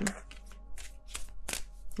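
A tarot deck being shuffled by hand: a handful of short, sharp card flicks spaced a few tenths of a second apart.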